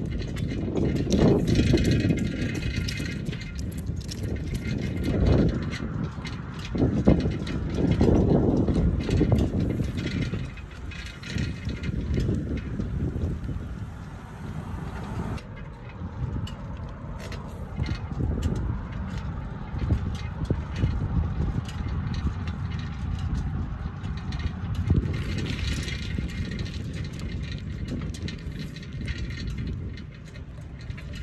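Wind buffeting the microphone of a phone in a bicycle handlebar mount during a ride, with rattles and knocks from the mount and bike jolting over bumps. The rush comes in uneven gusts and is stronger in the first half.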